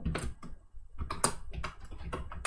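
Computer keyboard being typed on: about eight separate keystroke clicks at an uneven pace.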